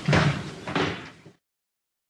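A door being shut, with two heavy thuds within the first second, after which the sound cuts off abruptly.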